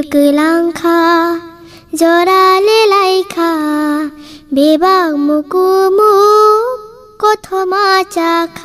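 A high solo voice singing a Kokborok song in short phrases of long held notes that rise and fall, with light musical backing.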